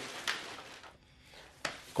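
Plastic carrier bag rustling faintly as it is handled, fading to quiet room tone, with a single sharp click near the end.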